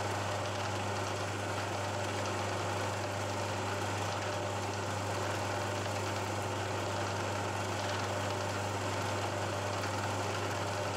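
Milling machine spindle running steadily with a twist drill in a small keyless chuck, drilling down into a metal block.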